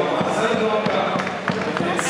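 People's voices at a race finish area, mixed with many irregular sharp knocks or claps.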